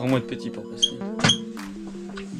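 Background music with held notes that change in steps, with a few sharp clicks, one ringing briefly just past halfway.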